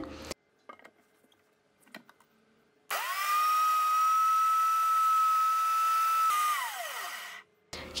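High-speed countertop blender motor blending water spinach leaves with water: it starts suddenly about three seconds in and holds a steady high whine, then is switched off near the end and its pitch falls away as the motor spins down.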